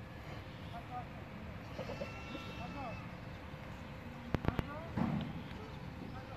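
A large herd of goats bleating, many scattered short calls over a steady din from the flock. About four seconds in come three sharp clicks in quick succession, the loudest sounds here.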